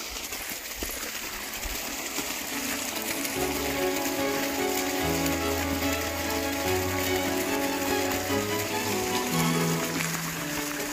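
Steady rush of a shallow stream running over rocks, under background music that fades in during the first few seconds and fills out with a bass line from about halfway.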